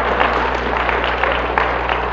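Audience clapping and laughing in response to the speaker's joke: a dense, loud patter of many hands, over a steady low hum in the old recording.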